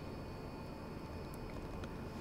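Quiet room tone, a steady low background hum, with a couple of faint short clicks late on.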